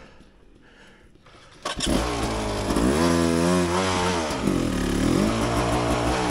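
Beta 300 RR two-stroke dirt bike engine coming in suddenly a little under two seconds in, then revving up and down, the pitch rising and falling.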